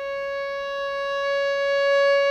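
A violin bowing one long, steady note that grows slightly louder toward the end.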